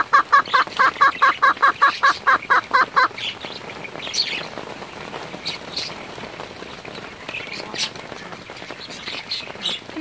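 A hen perched right by the microphone calling in a fast, even run of short pitched notes, about six a second, which stops about three seconds in; these are the calls of an upset hen. Rain patters for the rest of the time, with scattered sharp drips.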